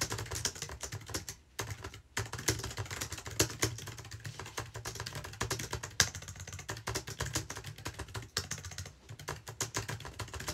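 Fast typing on a computer keyboard: a dense, uneven run of key clicks, broken by two short pauses in the first couple of seconds.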